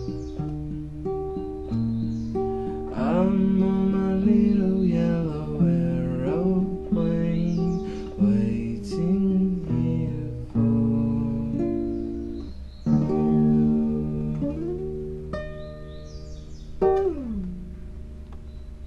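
Acoustic guitar playing held, ringing notes, with a voice singing wordless sliding notes over it; the playing fades out near the end.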